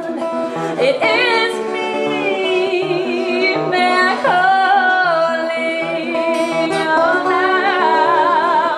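A woman singing long, held notes with vibrato over a steadily strummed acoustic guitar, in a live performance.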